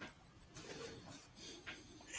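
Near silence: faint room tone over an online call, with a few soft, faint handling-like sounds.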